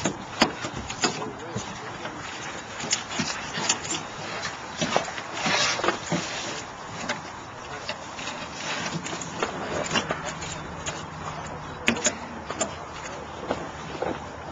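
Scattered knocks and clicks of oyster shells and clumps being handled on a boat deck, over indistinct background voices.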